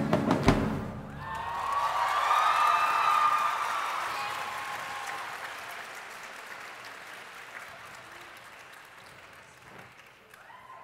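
A stage musical number ends with a loud final chord and drum hits in the first second, then audience applause swells and gradually fades away.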